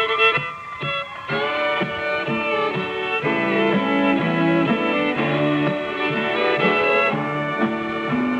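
Country band playing the instrumental intro to a song, a fiddle taking the lead over guitar and a stepping bass line, starting about a second in.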